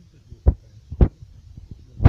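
Two dull thumps about half a second apart over a low steady hum.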